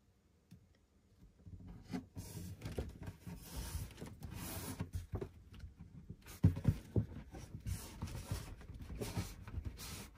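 Rubbing and scuffing with a few light knocks as a corner-trim shelf support, backed with double-sided mounting tape, is pressed onto a closet wall. It starts about a second and a half in.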